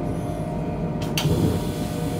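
Running noise inside the passenger car of an ICE high-speed train: a steady low rumble. About a second in, a louder rushing hiss joins it.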